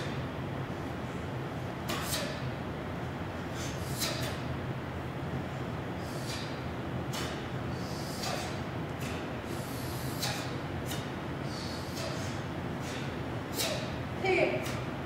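Short, sharp swishes and snaps of a cotton taekwondo uniform, about one every second or two, as a student performs the strikes and blocks of a pattern. A steady low hum of the hall runs underneath.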